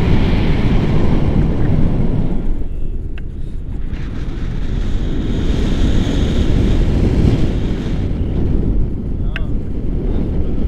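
Airflow buffeting an action camera's microphone during a tandem paraglider flight: a loud, rough rumble that eases briefly a few seconds in.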